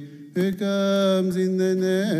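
A male voice chants a Coptic Orthodox liturgical hymn. It pauses briefly at the start, then holds a long, steady note with slight ornamental turns.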